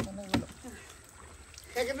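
Splashing and sloshing of shallow muddy water as people wade and work through a drained pond, with two short sharp knocks in the first half second.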